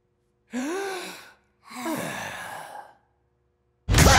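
A cartoon character's voice giving a short gasp, then a longer breathy sigh that trails off.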